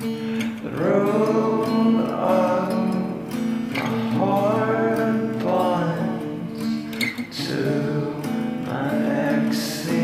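Lo-fi song with strummed acoustic guitar and long held notes in a sung melody line.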